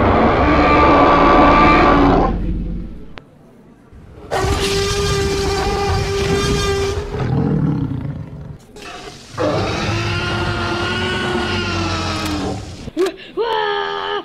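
Dinosaur roar sound effects: three long calls with pauses between them. The first is rough and noisy, and the later two are held on a steady pitch.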